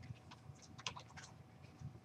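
Faint, scattered clicks of computer keyboard keys being typed.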